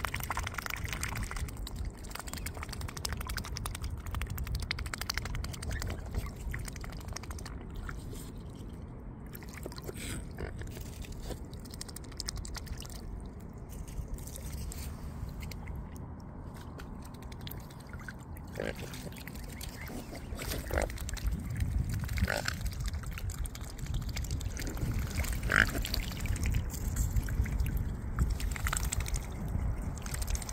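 Mute swans and their cygnets dabbling close by: bills sifting and slurping through shallow water, a dense run of small wet clicks and splashes. A few short calls cut in during the second half.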